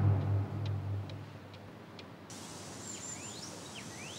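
The low tail of a dramatic music cue fades out over the first second or so, with faint regular ticks. About two seconds in, quiet outdoor ambience with a few birds chirping.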